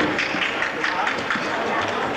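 Steady, indistinct chatter of many people in a gym hall, no single voice standing out.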